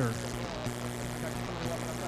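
Steady low electrical buzz in the studio's sound system: a mains hum with its overtones, from a source nobody can find.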